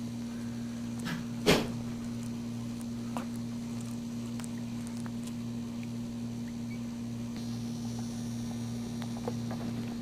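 Steady low electrical hum, with one sharp knock about one and a half seconds in and a fainter tick a little later.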